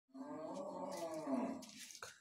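A cow mooing once: a single long call that drops slightly in pitch and fades out.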